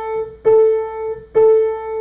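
Piano playing the treble A (the A above middle C, second space of the treble staff) over and over: one note already ringing, then two more strikes of the same key about a second apart, each held and fading.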